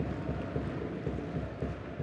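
Muffled stadium ambience after the final whistle: low crowd noise with scattered, irregular clapping.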